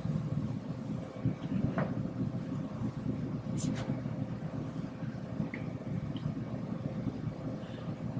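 Room tone: a steady low hum with a faint constant tone above it and a few faint, scattered clicks.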